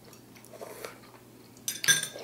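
Metal utensil clinking against a ceramic soup bowl, a few quick sharp clinks near the end after a mostly quiet stretch.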